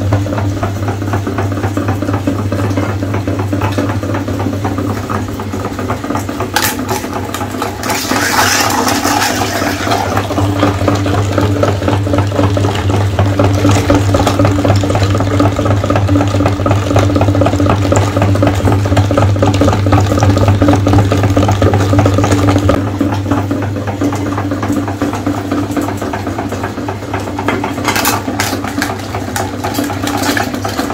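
Motor-driven meat grinder running with a loud steady hum while its auger crushes whole eggs and forces the wet mash through the plate. A few sharp cracks and a brief crunching burst break through, about seven to nine seconds in and again near the end.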